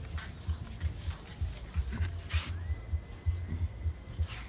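Wind buffeting the microphone in uneven gusts, with a few scuffing sounds and a faint steady high whistle coming in about two and a half seconds in.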